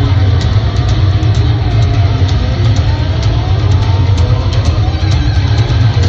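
Hard rock band playing live at arena volume. A heavy, steady low end dominates, with gliding higher melodic lines over it.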